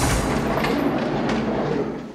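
Hospital gurney rolling, its wheels rumbling and rattling with faint rhythmic clacks over the floor, then dying away near the end as it comes to a stop.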